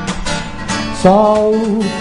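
A man singing a Brazilian MPB song to his own strummed acoustic guitar; his voice comes in on a held note about a second in, over even strums.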